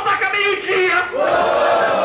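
A man raps in Portuguese into a handheld microphone. About a second in, a crowd breaks into one long collective shout in reaction.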